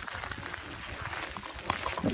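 Light rain pattering close to the microphone, with scattered sharp clicks of drops over a low rumble.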